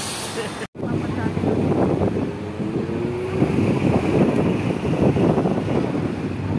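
Tour bus running, with wind buffeting the microphone, heard from the open top deck of the moving bus. A burst of laughter comes just before a brief cut-out under a second in.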